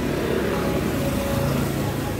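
A motor vehicle passing on the street close by. Its engine and tyre noise swells at the start and eases off near the end.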